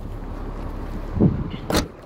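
Car boot lid being shut: a low knock about a second in, then the lid latching closed with one sharp thump near the end, over wind rumble on the microphone.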